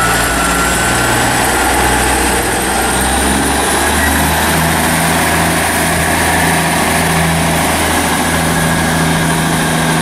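Class 158 diesel multiple unit pulling away under power, its underfloor diesel engines running steadily with a high whine that rises about three to four seconds in.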